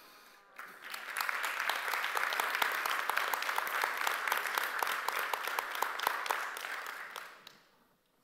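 Audience applauding: the clapping starts about half a second in, holds steady, and dies away near the end.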